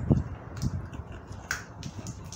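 A small sweet's wrapper being handled and opened while sweets are eaten: a few sharp clicks and crackles, the loudest about one and a half seconds in, with low thumps near the start.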